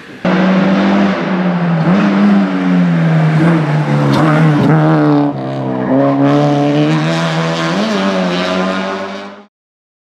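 Honda Civic hatchback race car engine at high revs as it passes, with several brief dips and small glides in pitch as the driver works the throttle through a bend. It starts suddenly and cuts off abruptly near the end.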